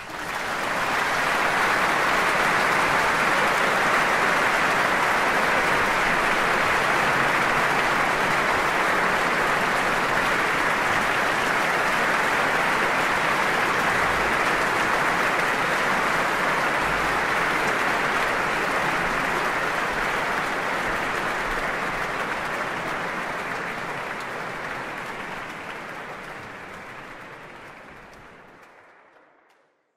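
Concert-hall audience applauding at the end of a live performance. The applause swells within the first second, holds steady, and fades away over the last several seconds.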